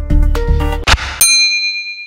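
Game-show background music with a steady beat stops abruptly about a second in, and a single bright electronic ding rings for about a second, a quiz-show sound effect.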